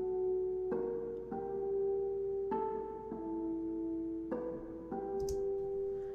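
Sampled harp harmonics playing a slow figure: clear notes struck in pairs about every two seconds, each left ringing under the next.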